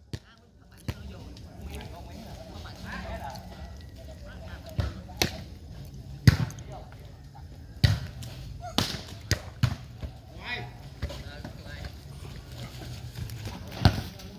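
Volleyball being struck during a rally: a series of sharp smacks at irregular intervals, about eight in all, clustered in the middle and one more near the end, over a murmur of voices.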